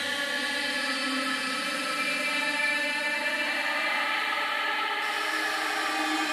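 Electronic dance music: a sustained synthesizer pad chord held and slowly swelling, with no beat or vocals.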